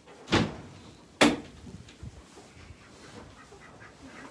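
A door being moved: a short scrape, then a sharper knock about a second later.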